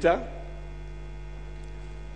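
Steady low electrical mains hum from the sound system, with faint higher overtones above it.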